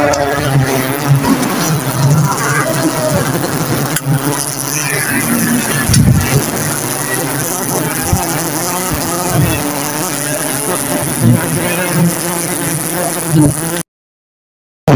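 A swarm of giant honey bees (Apis dorsata) buzzing steadily around their comb as it is cut and pulled from the nest by hand. The sound cuts off abruptly just before the end.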